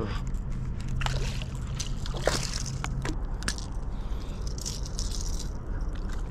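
A hooked smallmouth bass splashing and sloshing at the water's surface as it is reeled in and lifted out, with a few sharp clicks, over a steady low hum.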